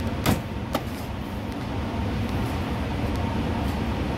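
A steady low mechanical rumble, with two sharp taps in the first second.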